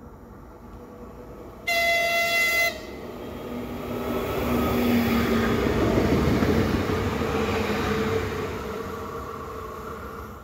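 A Škoda RegioPanter electric multiple unit sounds one horn blast about a second long as it approaches. It then runs past at speed, its noise swelling to a peak and fading as it goes away.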